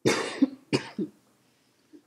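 A woman coughing, a loud cough followed by two shorter ones within about a second.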